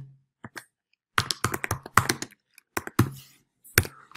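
Typing on a computer keyboard: a quick run of key clicks in small clusters, starting about a second in and going on almost to the end, as a short line of code is typed.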